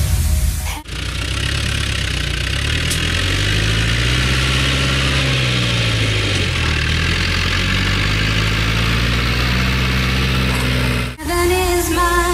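Tractor diesel engine running steadily, its pitch slowly rising and falling as the revs change.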